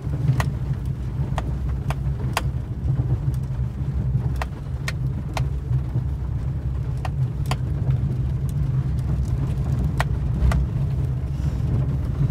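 Steady low rumble of a car's engine and tyres heard from inside the cabin while driving, with about a dozen sharp ticks scattered through it, several in pairs about half a second apart.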